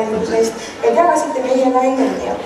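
A woman talking, with a short pause a little before halfway.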